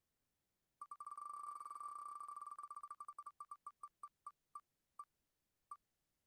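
Wheel of Names web spinner's tick sound effect as the wheel spins: rapid ticks start about a second in, then come further and further apart as the wheel slows, with a last single tick near the end as it comes to rest.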